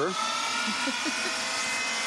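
Small jet engine running with a steady rushing noise and a thin high whine that edges slightly upward in pitch.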